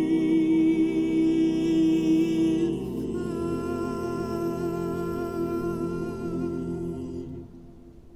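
Male a cappella vocal ensemble of six singers holding sustained chords, moving to a new chord about three seconds in, then fading away near the end as the piece closes.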